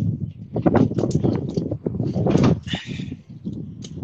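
Semi-trailer landing gear being hand-cranked up: a run of irregular clicks and clunks from the crank and leg gearing over a low rumble, as the trailer's weight shifts off the legs onto the tractor's fifth wheel.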